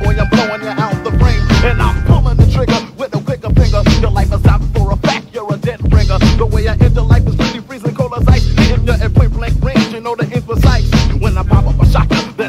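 Hip hop music from a cassette tape rip: a male voice rapping over a heavy, steady bass beat.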